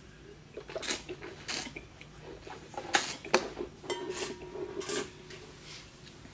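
Wine taster slurping a mouthful of red wine, drawing air through it in about six short, noisy sucks spread over a few seconds to aerate it in the mouth.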